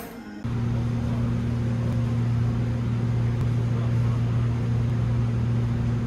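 Steady low hum and rumble of a moving vehicle heard from inside, cutting in abruptly about half a second in and holding even throughout.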